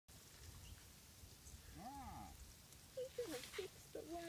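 Faint low rumble, then about halfway through a short voiced sound that rises and falls in pitch, and a person's voice starting in the last second with short exclamations.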